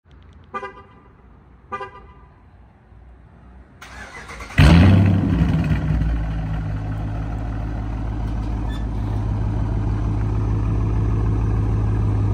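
Two short car-horn chirps from the Dodge Charger R/T as its key fob is pressed, then its 5.7-litre HEMI V8 starts with a loud burst about four and a half seconds in and settles into a steady idle.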